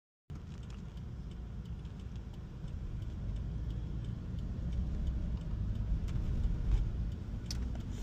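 Low road and tyre rumble heard inside the cabin of a Toyota Prius hybrid as it moves off, growing slowly louder as the car gathers speed.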